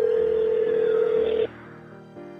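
Telephone ringback tone through a phone line: one long steady beep that stops about a second and a half in, over soft background music.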